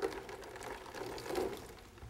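Water poured over the top of a sealed, inverted jar of hot water, with a knock at the start and an uneven splashing wash after it. The pouring cools the vapour inside, lowering the pressure so the water in the jar boils faster.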